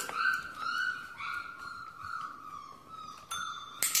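A small bell rung again and again by a dachshund, a ringing note struck roughly three times a second and slowly fading. A sharp click comes near the end.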